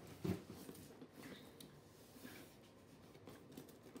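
Objects handled on a tabletop while someone looks for a pen: a short knock about a quarter second in, a few faint clicks a second later, then quiet room tone.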